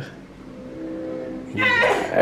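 A faint steady hum made of a few held tones, then a person's voice says "yes" near the end.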